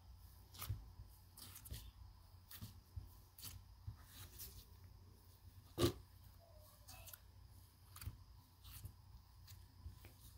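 Pink cloud slime being kneaded and squeezed by hand: faint, scattered soft crackles and squishes, with one louder snap about six seconds in.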